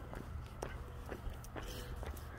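Footsteps on pavement at a walking pace, about two steps a second, over a low steady rumble.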